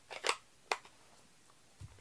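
Handling of a plastic stamp ink pad case: a short scuffing sound, then a single sharp click about three-quarters of a second in.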